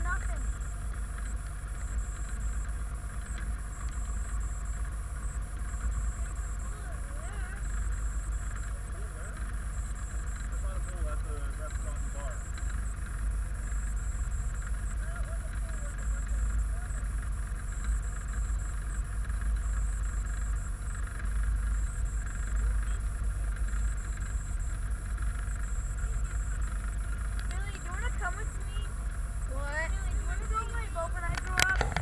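Motorboat running steadily under way, a constant low rumble with a few steady tones above it, and faint voices now and then.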